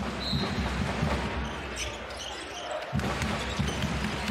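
Basketball game in a full arena: steady crowd noise with a ball bouncing on the hardwood court. A brief high squeak comes near the start.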